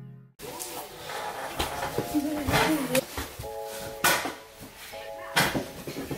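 Intro music fading out and stopping about half a second in. Then handling noises in a small room: a run of knocks and clicks as a blanket and household things are moved about, with a short voice about two seconds in and brief steady tones twice.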